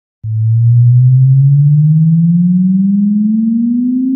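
Loud electronic sine-wave tone that starts suddenly a quarter second in, low in the bass, and glides slowly and steadily upward: the test sweep that opens a DJ speaker-check remix, meant to test the bass speakers.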